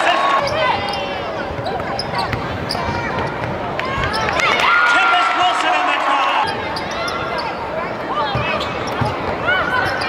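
Live basketball game sound: a ball bouncing on a hardwood court amid many short knocks and high squeaks, with shouting players and crowd voices throughout.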